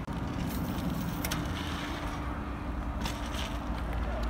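BMX bike tyres rolling on asphalt, a steady low rumble, with a few sharp clicks along the way.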